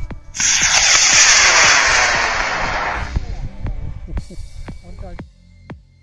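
Aerotech F47W (White Lightning) model rocket motor igniting and burning: a sudden loud rushing hiss about half a second in, fading away over the next few seconds as the rocket climbs off the rail.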